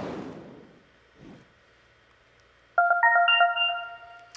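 A swoosh that fades over about a second, then, near three seconds in, an electronic chime of a few quick bright notes that ring on together: a signal sound marking the start of the rebuttal turn.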